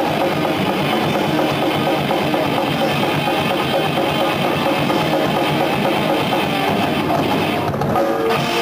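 Death metal band playing live: distorted electric guitars over fast, dense drumming. The band breaks off briefly just before the end.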